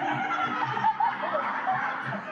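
Audience laughing together, many voices at once, over a backing track with a steady low beat.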